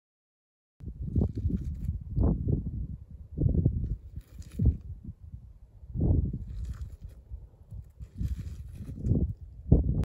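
Wind buffeting an outdoor microphone, an irregular gusting low rumble that starts after a moment of silence, with a few brief crunches of shoes shifting on loose gravel.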